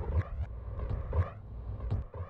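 DJ scratching: a sample dragged back and forth in quick, irregular strokes, several a second, each sweeping up or down in pitch.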